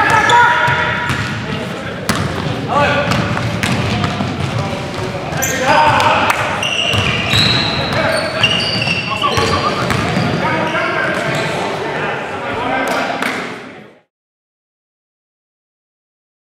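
Live sound of a men's basketball game in a gym: players' voices calling out, sneakers squeaking and the ball bouncing on the hardwood floor, echoing in the hall. It cuts off suddenly about two seconds before the end.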